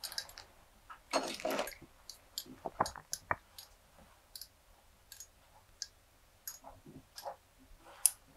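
Scattered light clicks and brief rustles of fly-tying tools and materials being handled on a bench, loudest for about half a second just after a second in.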